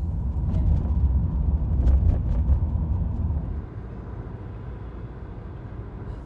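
Car cabin noise while driving: a steady low rumble of road and engine, heavier for the first three and a half seconds, then easing to a lower level.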